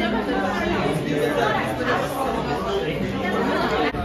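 Restaurant chatter: many voices talking over one another in a dining room, with a laugh at the start.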